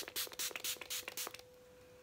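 Fine-mist pump bottle of hydrating facial spray being pumped rapidly, a quick run of short hissing sprays that stops a little over a second in.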